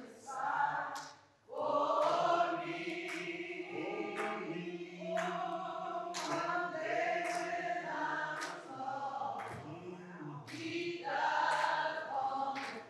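Choir singing slowly, with long held notes and a short break about a second in.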